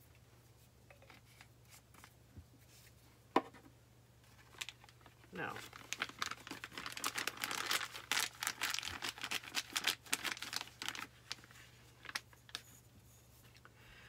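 A thin plastic bag with paint in it crinkling steadily as hands work it, starting about five seconds in and stopping about six seconds later. Before that, a single sharp click about three seconds in.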